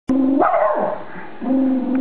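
Small terrier whining at the television in a drawn-out, howl-like voice: a held low tone that swoops up sharply and falls back about half a second in, then holds again.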